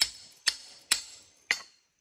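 Hand-operated chain wire stretcher for smooth fence wire clicking as it is worked on the wire: four sharp metal clicks about half a second apart, each with a brief ring, as the clamp is set to grip the wire.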